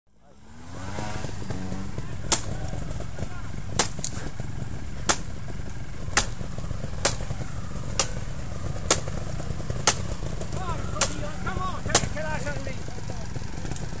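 A blade chopping at a fallen branch to clear a trail: about ten sharp strikes, roughly one a second, over the steady low running of idling trials motorcycles.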